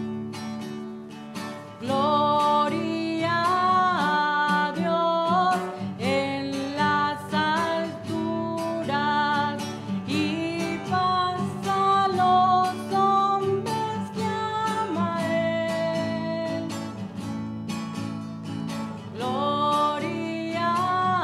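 A hymn sung by a single voice to strummed acoustic guitar, the voice coming in about two seconds in and holding long notes with vibrato.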